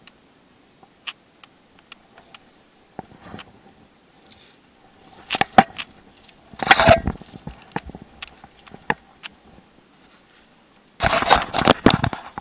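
Handling noise on a YI action camera: scattered clicks and scrapes as things rub and knock against it, with louder bursts of rubbing about seven seconds in and again near the end.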